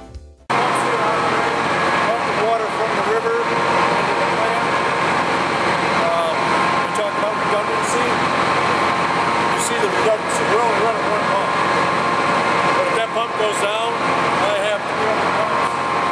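Steady hum of the large electric motors driving water-treatment plant pumps, running without a break through the pump hall, with indistinct voices of people talking over it.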